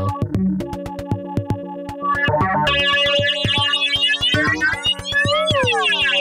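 Modular synthesizer patch playing a steady kick-and-snare drum pattern under the ringing tones of a digital resonator, a Buchla-format version of Mutable Instruments' Rings. Its timbre shifts as its structure knob is turned: about three seconds in the tones turn much brighter, with many added overtones, and near the end they bend and slide down in pitch.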